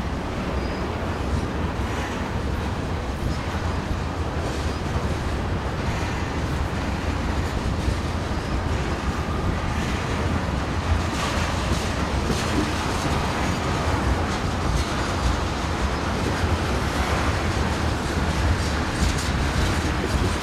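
Freight train of tank cars rolling past: a steady rumble of steel wheels on the rails, with occasional sharp clicks and clacks as the wheel trucks pass.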